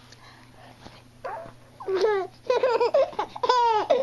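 Baby giggling and babbling in short high-pitched bursts, starting about a second in and getting louder toward the end.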